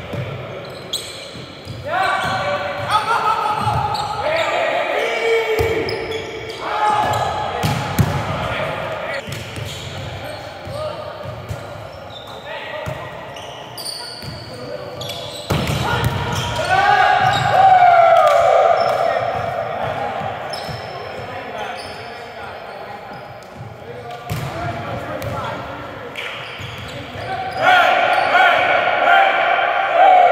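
Volleyball rallies in an echoing gym: sharp smacks of the ball being hit, with players' shouts and calls rising in bursts, loudest about two seconds after the middle and again near the end.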